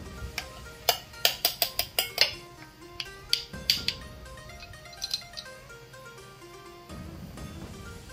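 Background music with a melody, over a run of sharp clinks from about one to four seconds in: measuring spoons knocking against a stainless steel mixing bowl as marinade ingredients are tipped in.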